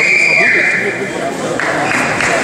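Electronic buzzer sounding one steady high tone for about a second and a half, over the chatter of a crowded sports hall. Clapping starts near the end.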